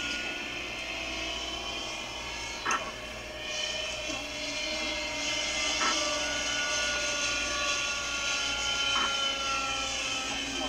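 Kyosho Caliber 60 RC helicopter in flight: its O.S. .61 two-stroke glow engine and rotors run steadily, the engine's pitch drifting slowly down in the second half. Brief clicks come about every three seconds.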